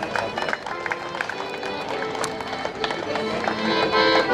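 Accordion playing folk music, held chords coming in and growing louder toward the end, with crowd chatter underneath.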